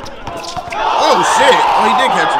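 A basketball bouncing on an outdoor court under the voices of a crowd. The crowd grows louder about a second in.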